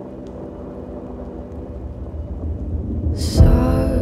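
A low rumbling noise swells steadily louder, then breaks into a loud sudden hit about three and a half seconds in, after which the music comes back in.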